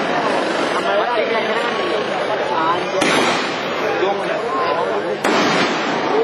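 Aerial fireworks going off overhead, with a sharp bang about three seconds in and another near the end.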